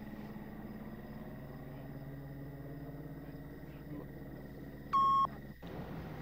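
A steady low hum, then, about five seconds in, a single short electronic beep: one steady high tone lasting about a third of a second. The hum cuts off soon after.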